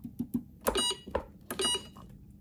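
Two short electronic beeps from an ITBOX i52N Lite punch card time recorder, each given as its plus button is pressed in setting mode, under a second apart, with light plastic button clicks.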